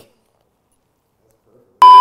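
Near silence, then near the end a short, very loud electronic beep, a single steady high tone that cuts off sharply.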